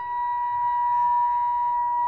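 Carnatic bamboo flute holding one long, steady, pure note, with fainter steady lower tones beneath it.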